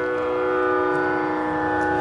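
Sruti drone for Carnatic singing, holding the tonic as one steady, unchanging pitched tone with many even overtones.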